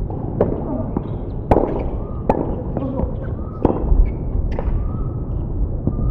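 Tennis rally on a hard court, opening with a serve: a series of sharp racket-on-ball hits and ball bounces, roughly one a second, the loudest about a second and a half in.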